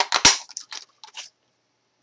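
Handheld craft paper punch cutting a vintage-label shape out of a paper tag: two sharp snaps close together near the start, the second the loudest, then a few fainter clicks.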